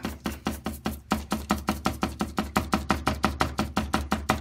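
A large stiff-bristle paintbrush dabbed rapidly and repeatedly into thick black acrylic paint on a palette, loading the brush. The taps are even, about nine a second.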